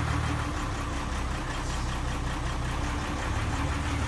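A trawler's inboard engine idling steadily while its rebuilt Paragon marine transmission is shifted into forward gear, its low note shifting slightly about half a second in.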